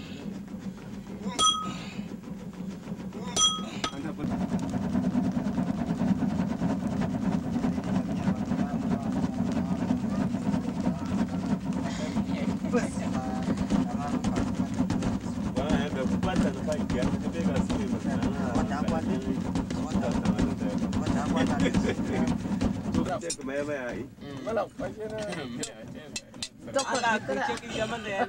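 A smith's hammer strikes a glowing iron bar on a stone anvil twice near the start, each blow ringing briefly. A steady low hum follows and stops suddenly near the end, with voices talking in the background.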